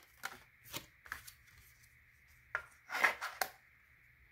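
Oracle cards being handled and set into a slotted wooden card stand: about six short, sharp taps and clicks of card on wood, the loudest and longest about three seconds in.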